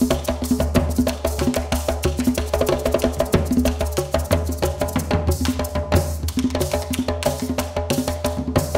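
Instrumental stretch of Afro-Colombian percussion music: a dense, steady rhythm of drums and other struck percussion, with no singing.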